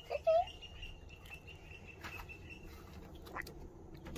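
A child's short vocal sound, followed by faint clicks and knocks of art supplies being handled in an aluminium carry case. A faint, high, pulsing tone runs through the first two-thirds.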